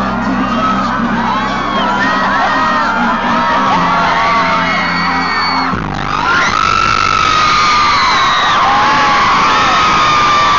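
Amplified pop song with a steady bass line, under a crowd of fans screaming and whooping. The music cuts off suddenly about six seconds in, and the crowd keeps screaming with long, high held cries.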